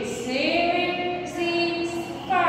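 A woman singing a slow melodic line, gliding up and then holding one note for about a second.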